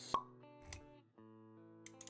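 Background music with held notes. A sharp pop sound effect comes just after the start and a softer click follows a little later. The music briefly drops away near the middle, then comes back on a new chord.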